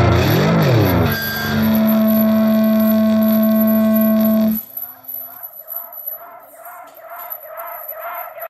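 The tail end of a hardcore punk band recording: a note wobbling up and down in pitch, then a single held note that stops abruptly about four and a half seconds in. A quieter wavering tone follows, pulsing about twice a second.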